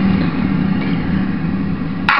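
Instrumental backing beat between vocal lines: a steady, buzzing synth with a held low bass note.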